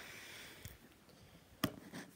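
Handling noise: a soft rustle at the start, then one sharp knock about one and a half seconds in.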